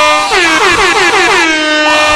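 Loud air horn, like an arena goal horn, with music. Quick falling pitch swoops settle into a held chord, then start afresh about a third of a second in.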